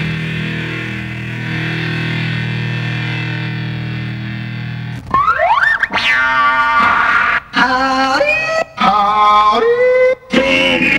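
Turntablism on Technics turntables: a held, steady chord for about five seconds, then a record manipulated by hand, with quick rising pitch glides and stepping tones that cut off briefly several times.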